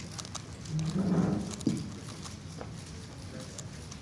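Megaminx, a twelve-faced twisty puzzle, being turned fast, its plastic layers clacking in quick irregular clicks. About a second in, a person's voice is heard briefly in the background and is the loudest sound.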